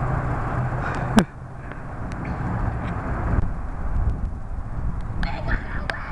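Boys' voices and shouts outdoors over a rumbling, noisy background on the microphone, with one sharp, loud click about a second in.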